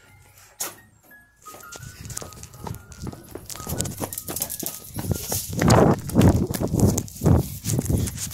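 A person running with a phone in hand: irregular footfalls, hard breathing and jostling of the phone, growing louder over the last few seconds.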